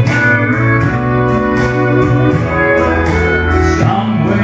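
Live country band playing a slow instrumental intro: pedal steel guitar over strummed acoustic guitar, with fiddle.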